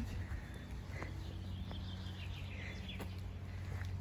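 Faint bird chirps over a steady low background hum, with a couple of soft clicks.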